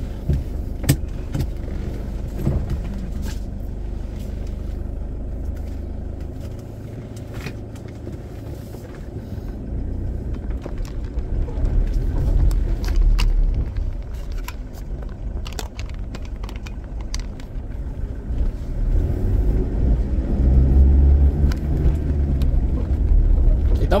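A car driving on an unpaved dirt and gravel road, heard from inside the cabin: a steady low engine and tyre rumble that grows louder about halfway through, with scattered sharp clicks and rattles.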